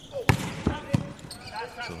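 A volleyball struck hard three times within about a second, sharp slaps: a jump serve, then further contacts as the rally starts.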